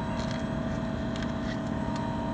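LG VRF air-conditioning outdoor unit running: the condenser fans and inverter compressor make a steady hum with a few level tones over an even rushing noise.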